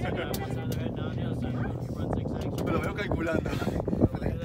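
Indistinct talk from several people over a low, steady hum.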